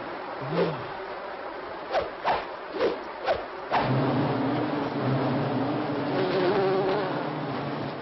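Cartoon sound effect of an angry bee swarm: a few quick whizzing passes, then from about halfway a dense, steady buzzing of many bees.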